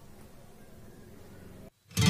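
Faint room tone with a weak low hum, dropping to dead silence near the end, then music with plucked guitar-like notes starting sharply right at the end.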